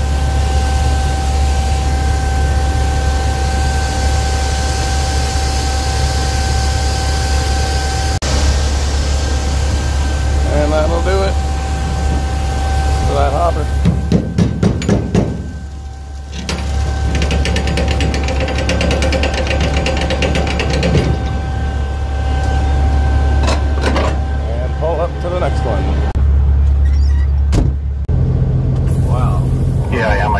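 Soybeans pouring out of a hopper trailer's gate into a grated grain pit: a steady hiss of falling grain over a low machinery hum, with a thin steady whine that drops out for several seconds in the middle and comes back.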